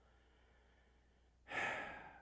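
A man's audible sigh: one breathy exhalation about one and a half seconds in, after a short quiet pause.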